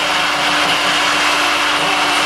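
Vacuum cleaner motor running steadily with a constant hum, its exhaust air blowing out through a hose and funnel.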